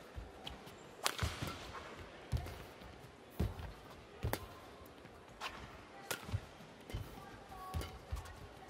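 Badminton rally: sharp cracks of rackets striking the shuttlecock about once a second, with low thuds of the players' footwork on the court between them.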